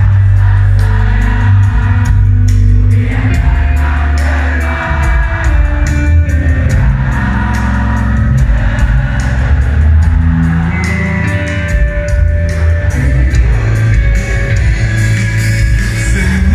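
Live rock band playing loud through the PA in a large hall: heavy bass and drums with a singing voice over them, heard from within the crowd.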